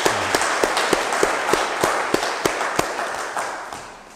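A group of people applauding, with a few louder single claps standing out in the patter; the applause dies away near the end.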